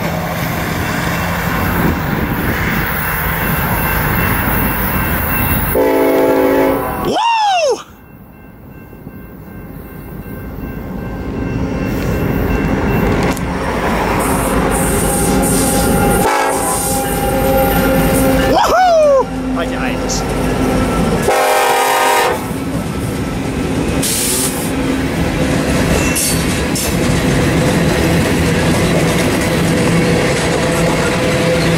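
BNSF diesel freight locomotives passing with a loud, continuous rumble, then flatcars loaded with armored vehicles rolling by. The air horn sounds briefly about six seconds in and again about twenty-one seconds in. About eight seconds in the sound drops off suddenly and builds back up as the next train approaches.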